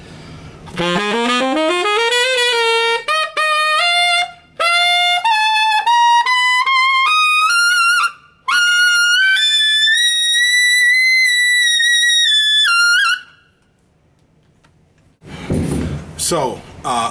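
Tenor saxophone playing a G blues scale upward: a quick run out of the low register, then single notes climbing into the altissimo register, ending on a long held note at the top of the range that stops about 13 seconds in.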